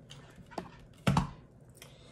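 Handling noise: a light knock about half a second in, then a louder, dull thump about a second in, as objects are moved and set down, with a faint tap near the end.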